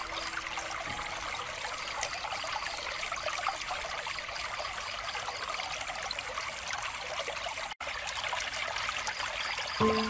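Water trickling steadily from a bamboo water fountain. The sound cuts out for an instant about three-quarters of the way through.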